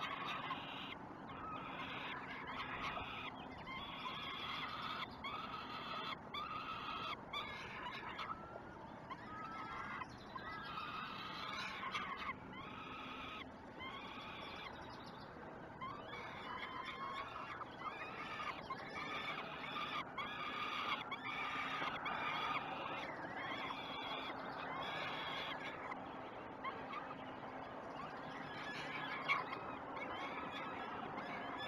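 Peregrine falcon chicks begging for food: a long run of short, high, wavering cries, one to two a second.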